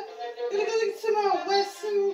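A violin being bowed: a slow melody of held notes that waver and shift in pitch.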